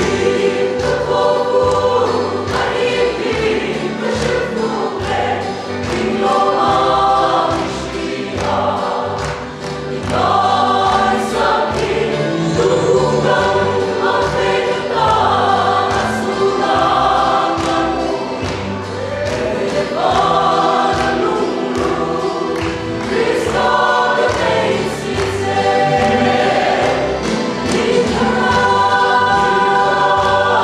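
A mixed choir of men's and women's voices singing a gospel song together.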